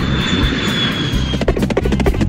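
Cartoon sound effect of a small jet aircraft flying: a steady engine rush with a thin high whine over a low rumble. Near the end come clicks and a falling tone.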